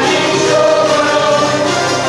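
A choir singing a Hungarian folk song, accompanied by a citera (Hungarian zither) ensemble strumming chords, with held notes throughout.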